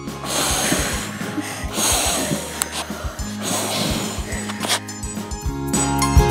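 A child blowing three long breaths onto freshly ironed Hama beads to cool them, with background music under it.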